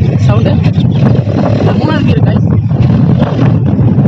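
Hero Honda Splendor Plus motorcycle's single-cylinder four-stroke engine running under way, a loud, steady, low exhaust rumble that the rider likens to a Yamaha RX 100.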